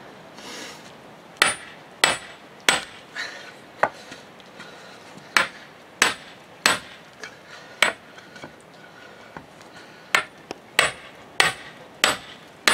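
A sledgehammer's iron head being knocked onto its wooden handle: about a dozen sharp knocks at uneven intervals, each with a brief metallic ring.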